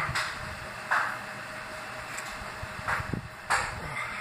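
A man breathing hard through a tissue held to his mouth, with a few short, sharp puffs of breath a second or two apart, from the burn of a raw Carolina Reaper chilli.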